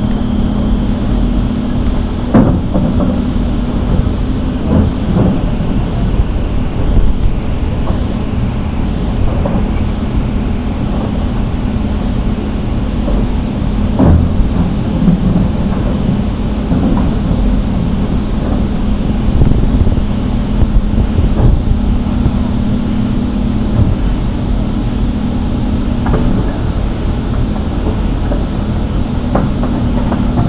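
A steady low engine hum with a few sharp knocks and clanks at intervals, typical of a truck running at the curb while rubbish is handled.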